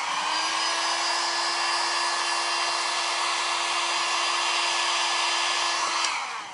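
A small electric blower runs steadily with a rushing airflow and a steady hum, blowing freshly drawn eyeliner dry. It starts up just before the sound begins and dies away right at the end.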